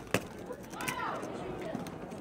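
Faint chatter of a crowd of spectators, with one voice calling out about a second in and a sharp click just after the start.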